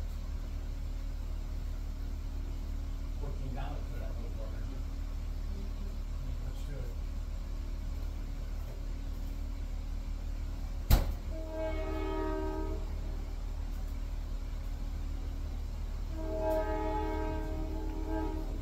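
Two long horn blasts about four seconds apart, each held for about a second and a half on a chord of several notes at once, over a steady low hum. A single sharp click comes just before the first blast.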